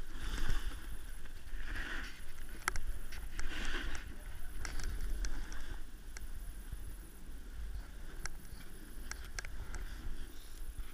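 Jones Directional snowboard sliding over snow, with a steady rumble of wind on the microphone. There are several hissing swishes of the board turning in the first few seconds and scattered sharp clicks.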